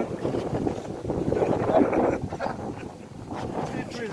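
Wind buffeting the microphone: a gusty rumbling noise that swells and fades, strongest about two seconds in.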